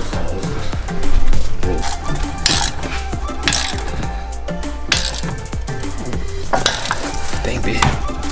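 Background music over short metallic clinks and clicks of a ratchet wrench turning a bolt on a seat bracket.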